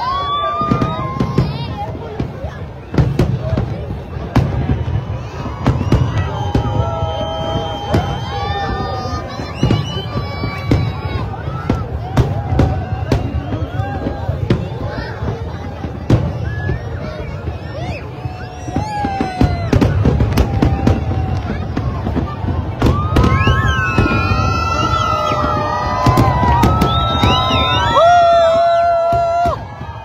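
Fireworks display: aerial shells bursting in quick succession, with a large crowd of onlookers talking throughout. The bursts come thicker and louder in the last few seconds.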